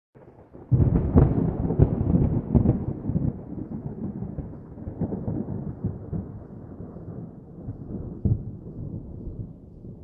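Thunder-like rumble: a burst of crackling cracks about a second in, then a long low roll that slowly dies away, broken by a couple of single cracks.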